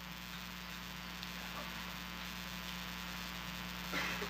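Steady low electrical mains hum with faint room noise from the microphone feed, and no speech.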